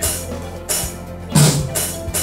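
Drum-kit music: a few cymbal-like crashes about half a second apart, one heavy bass-drum hit near the middle, and a steady low note underneath.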